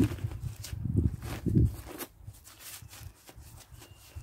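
Black weed-control fabric being gripped and pulled along a wooden bed frame: irregular rustling and crackling with a few low bumps, mostly in the first two and a half seconds, then quieter.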